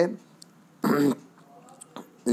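A person's single short throat-clearing cough, about a second in.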